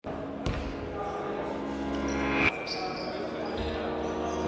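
A basketball bouncing on a hardwood court in a large gym, with players' voices echoing around it. There is a sharp knock about half a second in, and a brief loud, high-pitched sound just before the middle that cuts off abruptly.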